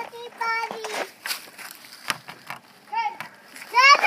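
A young child's high-pitched voice making wordless calls: a short held call about half a second in, a brief yelp about three seconds in, and a louder rising-and-falling shout at the very end.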